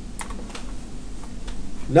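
A handful of sharp, irregularly spaced clicks from computer input devices over a faint, steady low hum.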